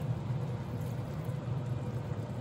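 Pan of chopped tomatoes simmering on a gas stove: a steady bubbling hiss over a low hum.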